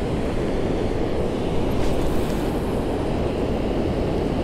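Steady low rushing noise of wind buffeting the microphone, mixed with the flow of river water.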